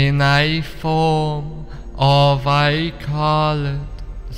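A male voice chanting in long held notes on a nearly steady pitch, mantra-like, over a steady low drone.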